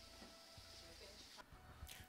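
Near silence: room tone with a faint low hum.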